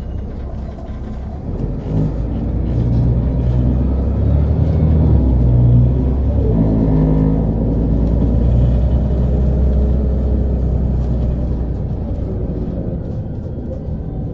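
Volvo B7RLE bus's six-cylinder diesel engine pulling away and accelerating, its note climbing. About halfway through, the ZF Ecomat automatic gearbox shifts up, and the engine note drops before climbing again and settling into steadier running.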